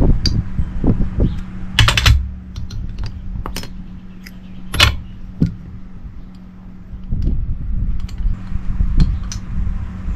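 Metal hand tools and a valve spring compressor clinking against a Honda Wave 125s motorcycle cylinder head as its valves are taken apart. A short rattle of clinks comes about two seconds in, and single sharp clinks follow, over a steady low hum.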